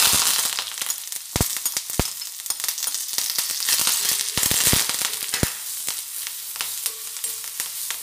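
Shallots, curry leaves and crushed red chilli sizzling as they hit hot oil in a kadai, loudest as they go in and then a steady frying hiss while they are stirred. A steel spoon knocks sharply against the plate and pan several times.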